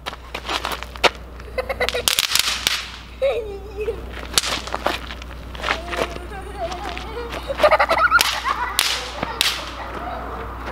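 Balloons bursting in a string of sharp, irregular pops as they are thrown and hit, with short shouts and laughter between them.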